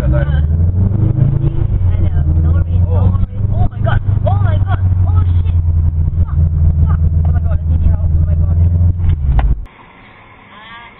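Car engine droning steadily, heard from inside the cabin, with voices talking over it. The drone cuts off suddenly near the end.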